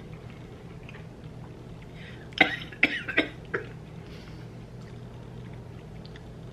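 A person coughing about four times in quick succession, a little over two seconds in, over a steady low room hum.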